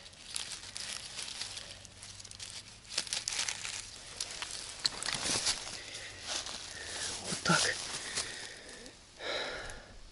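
Dry grass and leaf litter rustling and crackling as hands pull mushrooms from the ground and gather them, with a short vocal sound near the end.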